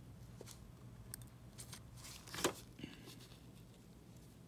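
Faint small clicks and light rustling as tweezers and small nail-art supplies are handled, with one sharper click about halfway through.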